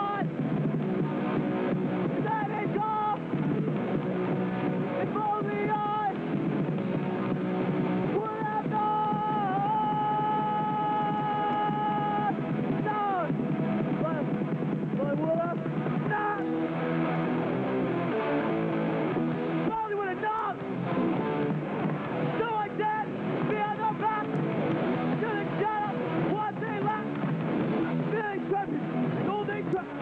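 Hardcore punk band playing live: distorted electric guitar, bass and drums at a steady level, with a long held note about nine to twelve seconds in. The old video recording sounds dull, with no high end.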